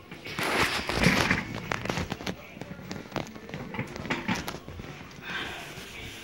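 Rustling, crackling handling noise with a rapid run of clicks and knocks as a phone is grabbed and moved about, loudest in the first second and a half, then dying down.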